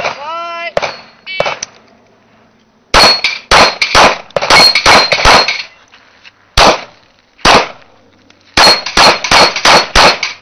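Handgun shots fired in quick strings: about eight rapid shots starting about three seconds in, two single shots, then another fast string near the end. A metallic ringing carries over the strings, typical of steel targets being hit.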